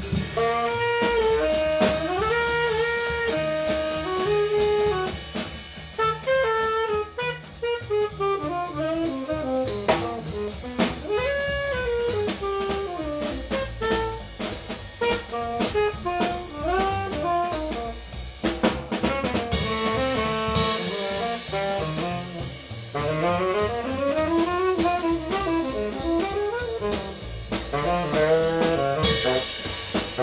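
Live jazz: a tenor saxophone plays long, fast phrases of quick note runs over double bass and a drum kit keeping time on the cymbals.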